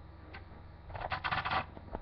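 Lego pieces being handled: a short burst of quick plastic clicking and rattling about a second in.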